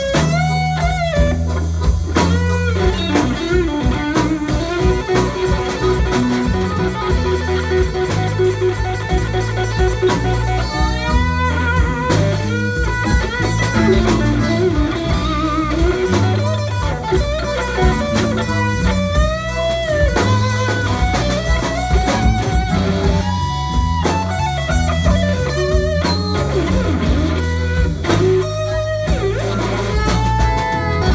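Live blues band playing an instrumental break with electric guitar, bass guitar and drum kit, and a harmonica played into a vocal microphone. The lead lines bend up and down in pitch.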